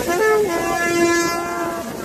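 A horn sounding one long, steady note with a rich, buzzy tone, starting slightly higher and settling a step lower, lasting about a second and a half.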